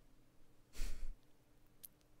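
A single short sigh, a breathy exhale close to the microphone lasting under half a second, about a second in. A faint small click follows near the end.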